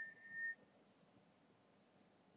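A single high, steady whistled note lasting about half a second at the start, then near silence.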